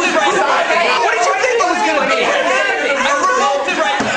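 Several people talking loudly over one another at once, an uproar of overlapping voices.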